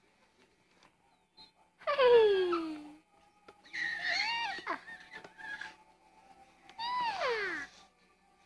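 An infant's high-pitched squeals of delight, three of them, each gliding down in pitch; the first, about two seconds in, is the loudest.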